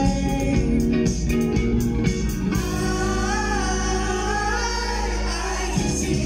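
Live band music, heard from within the crowd: a singer over guitar, keyboards, bass and drums. The drum hits are busier in the first half, then a long wavering sung line is held over a sustained bass from about halfway through.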